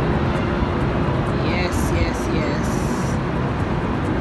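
Steady city traffic noise heard from high up: a low, even rumble with faint voices in the middle.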